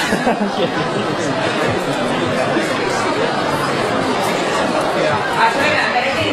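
Crowd chatter: many people talking at once in a large hall, a steady babble of overlapping voices with no single speaker standing out.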